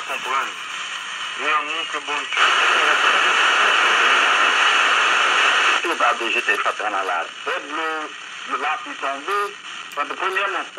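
Small portable FM subcarrier (SCA) receiver playing a talk broadcast through its speaker. About two and a half seconds in, loud steady hiss takes over for some three seconds while it is tuned between stations, and speech from another subcarrier station comes in again near the six-second mark.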